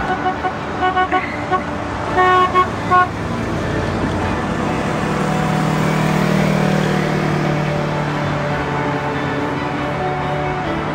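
A run of short car-horn toots in the first three seconds, the last few longer and loudest. Then a vehicle drives past, its engine note swelling and fading.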